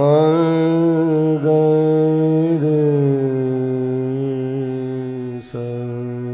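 Male voice singing long held notes of the descending scale (avroh) of Raag Ahir Bhairav in Hindustani classical style. The note changes about a second and a half in and again about two and a half seconds in, with a short break for breath near the end.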